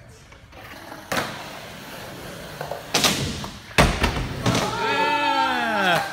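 Skateboard hitting concrete with several sharp thuds and slaps, the loudest and deepest about four seconds in. Right after it, several voices shout together in a long call that falls in pitch.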